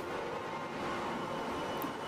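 Steady running noise of a container ship's engine-room machinery: an even hiss with faint steady whining tones.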